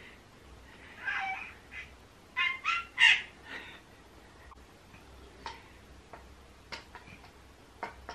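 A domestic cat meowing: a short call about a second in, then three quick high calls between two and a half and three seconds in, the last the loudest.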